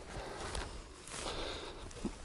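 Faint footsteps through short mown grass, soft irregular steps with light rustling.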